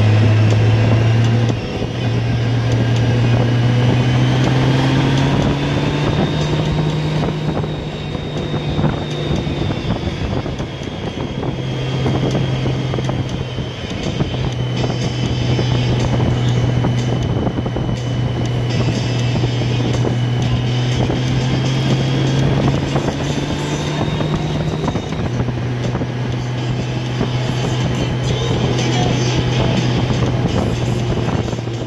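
Touring motorcycle engine running steadily while riding a winding road, heard from the rider's collar with wind noise over the microphone. The engine note breaks and steps briefly about a second and a half in, near the middle, and again near the end.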